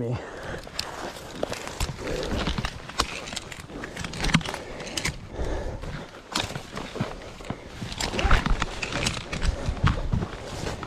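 Irregular rustling, scraping and clicking of a tree climber moving on his rope: climbing lines and carabiner knocking and clothing brushing against the body-worn microphone and the tree trunk.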